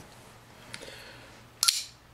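RJ Martin Q36 flipper knife flicked open: a faint tick, then a single sharp metallic snap about a second and a half in as the blade swings out and locks.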